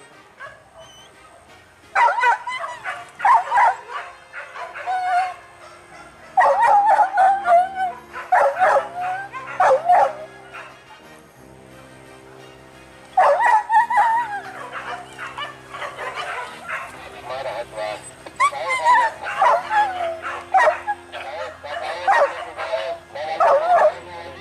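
Hunting dogs barking in repeated bouts separated by short lulls, over background music with steady held low chords.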